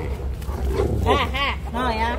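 Two Alaskan Malamutes vocalizing at each other face to face, with short calls that rise and fall in pitch, about three in the second half.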